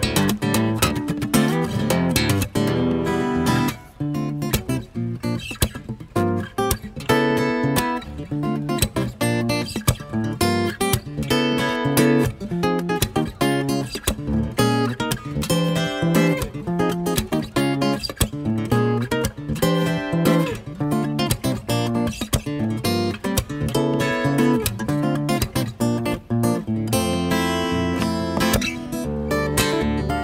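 Solo Takamine cutaway acoustic guitar playing an instrumental, with two-handed tapping on the fretboard: a dense, continuous run of plucked and tapped notes over lower bass notes.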